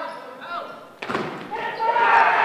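A volleyball struck with one sharp smack about halfway through, echoing in the gym, amid players' shouts; voices swell loudly near the end.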